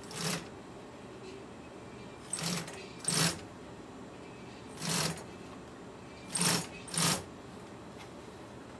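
Consew industrial sewing machine stitching black vinyl in six short bursts, each well under a second, with pauses between them.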